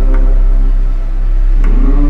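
Electronic bass/IDM music: a deep sustained sub-bass under held synth chord tones, with a sharp percussive hit about every second and a half.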